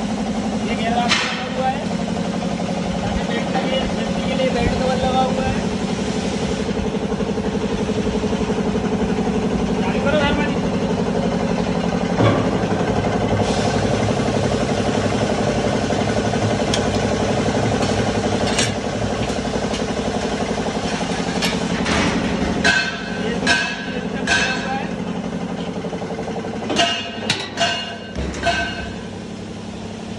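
Stainless-steel ribbon blender running: its electric motor and turning ribbon agitator give a steady hum, with a series of sharp metal knocks and clanks in the last several seconds.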